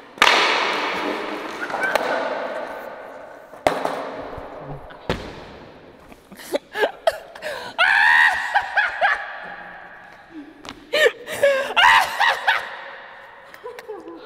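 Skater slamming on a failed hardflip: a loud crash of body and skateboard hitting the concrete floor, echoing in the big room, then two more knocks as the board clatters down. Shouting and laughter follow.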